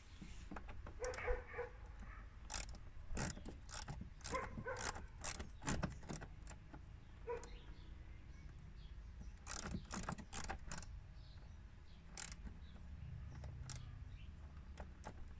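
Irregular metallic clicks and clinks of a hand tool working on fittings in a car's engine bay, coming in clusters of quick taps. A dog barks a few times about a second in.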